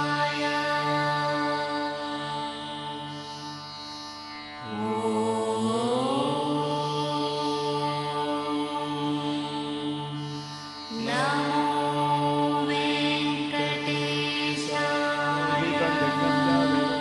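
Vedic mantra chanting in long, drawn-out held notes. The pitch slides slowly upward about five seconds in, and a new held phrase begins near eleven seconds.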